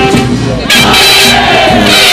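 Marching band brass and saxophones playing. Less than a second in, loud crowd noise joins the music.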